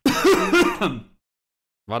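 A man coughing and sputtering in his throat after choking on coffee: a short, voiced burst that stops about a second in and sounds close to a laugh.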